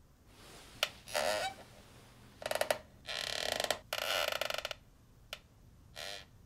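A sharp click, then a run of short bursts of rapid creaking, ratchet-like clicking, the longest two about a second each in the middle, and another single click near the end.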